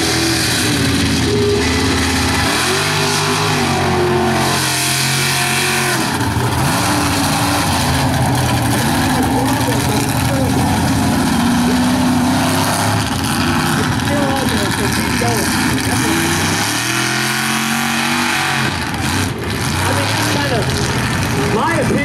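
Mega truck engine revving hard under load, its pitch climbing and falling in long runs, about three seconds in and again near the end, with steady engine and tyre noise between.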